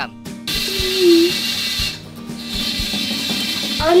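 A continuous dry rattling buzz, like a rattlesnake's rattle, that starts about half a second in, dips briefly around two seconds and then carries on.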